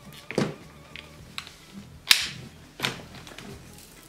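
Plastic clicks and knocks from a cordless stick vacuum as its wand is detached and the handheld unit is handled: about four short knocks, the loudest a sharp one about two seconds in.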